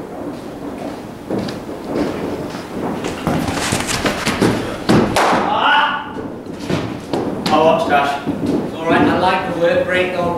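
Cricket ball and bat knocks in an indoor net, with a sharp thud about five seconds in, amid men's voices.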